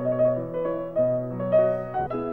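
Solo piano playing a slow, quiet melody. New melody notes come about twice a second over low notes held underneath.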